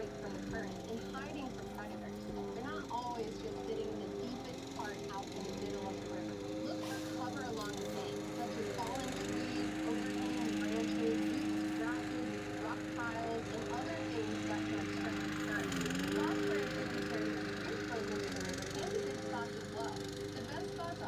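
Small lawn mower engine running at a steady pitch, with a brief dip in pitch about three-quarters of the way through.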